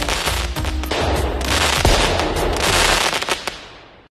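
Fireworks going off: dense rapid crackling and pops over a low rumble, with a sharper bang about two seconds in, fading out over the last second.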